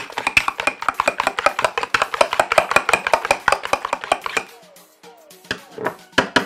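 Metal spoon whisking raw egg in a bowl: fast, rapid clicking strokes of the spoon against the bowl, stopping about four and a half seconds in.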